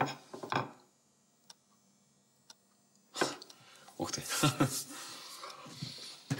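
Brief voice sounds, then about two seconds of quiet room tone. A little after three seconds there is a sudden short sound, followed by a spoken exclamation of surprise, "Ух ты!".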